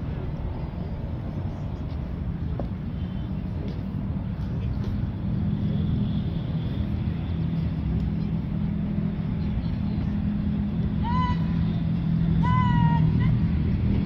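A steady low hum, like an idling engine or motor. Near the end, two short calls with falling pitch sound out, a second and a half apart.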